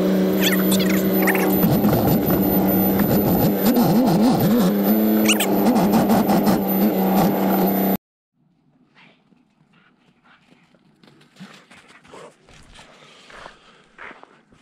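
Heavy diesel engine running at a steady speed, heard loud from inside a truck cab, with a wavering tone that rises and falls a few times in the middle. About eight seconds in it cuts off abruptly to much quieter, faint outdoor sound.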